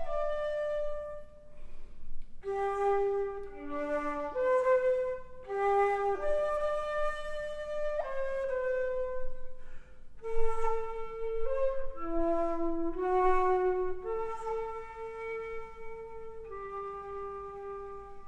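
Drouet 8-key wooden flute played solo: a melody of held notes and quick turns, closing near the end on a long held note that fades out.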